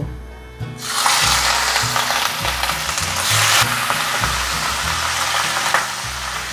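Pieces of rohu fish frying in hot mustard oil in a kadai: a loud, steady sizzle that starts suddenly about a second in as the fish goes into the oil and flares up once more briefly around the middle.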